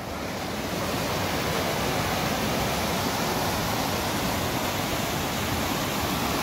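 Fast-flowing rocky mountain stream rushing over boulders in white-water rapids: a steady rush of water that grows a little louder over the first second, then holds even.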